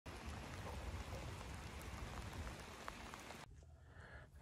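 Soft, steady hiss of rain falling, with a few faint drop ticks, stopping abruptly about three and a half seconds in.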